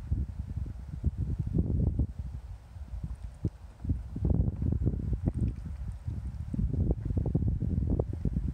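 Wind buffeting the microphone outdoors: a gusty low rumble that surges and eases irregularly.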